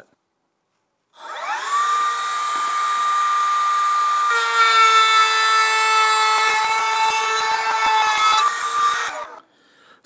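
Table-mounted router spinning up with a rising whine and settling into a steady run. About four seconds in, the sound changes and grows louder as the bit cuts a rabbet along the edge of a board fed past the fence. It cuts off sharply near the end.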